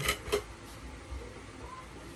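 Two quick light knocks about a third of a second apart, from a metal corner-shelf pole being handled against the floor and its plastic parts.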